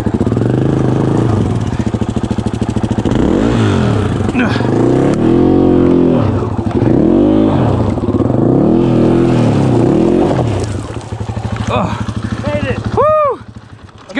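KTM 500 EXF's single-cylinder four-stroke dirt-bike engine revving hard under load, its revs swelling and dropping several times as the bike is ridden and pushed up a steep rutted climb. Near the end the engine cuts out and a short shout follows.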